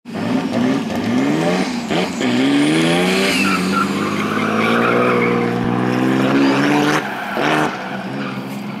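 Drift car engine revving hard, its pitch climbing and falling with the throttle, over tyres screeching as the car slides sideways through a corner. The engine note drops briefly about two seconds in and again near the end.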